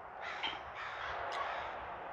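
Faint bird calls, a few short calls, over a steady outdoor background hiss.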